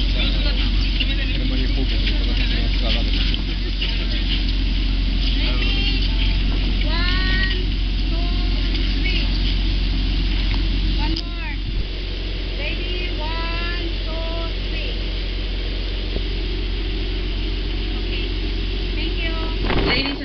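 Scattered voices of a group of people talking and calling out over a steady low rumble, which eases slightly about eleven seconds in.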